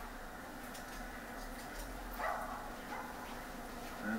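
Quiet arena background from a dog show broadcast, heard through a television's speaker, with a short dog bark about two seconds in.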